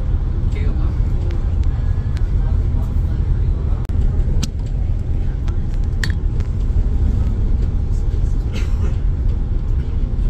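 Steady low engine and road rumble heard from inside a moving shuttle bus cabin at cruising speed, with a few brief clicks.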